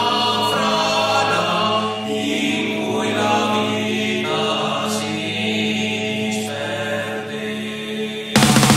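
Slow, chant-like choral voices holding long notes over a steady low drone: the intro of a heavy metal song, before the band comes in.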